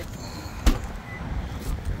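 A 2019 Toyota RAV4 Hybrid's driver door shut once with a single solid thump, a little under a second in, over a low rumble.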